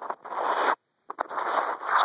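Fingertips scratching and rubbing on the camera's lens and body right at the microphone: two loud, scratchy stretches split by a brief silence just before the middle.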